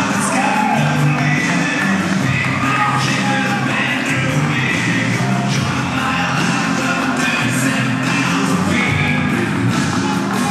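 A wrestler's entrance music with singing, playing steadily.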